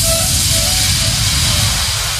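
Electronic dance music from a vixa club mix at a breakdown: the kick drum has dropped out and a loud hissing noise sweep fills the sound with a few short synth notes, slowly fading.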